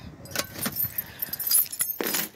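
A bunch of keys jangling: a run of irregular, light metallic clinks.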